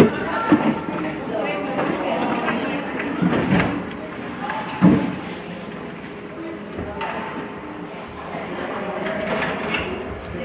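Ice hockey play in an arena, with a few sharp knocks, the loudest right at the start and about five seconds in. Indistinct talk from spectators runs underneath.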